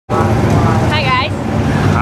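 Race car engines running loud and steady, a deep rumble. A brief voice cuts in about a second in.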